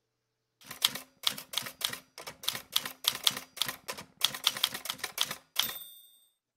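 Manual typewriter typing: sharp key strikes in quick runs, about four a second, then a bell ringing near the end, the carriage-return bell.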